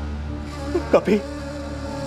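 Background-score drone: a low, steady hum with long held tones, and a short vocal sound about a second in.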